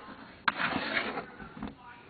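A Go stone set down on the board with a sharp click about half a second in, and a softer tap past the middle.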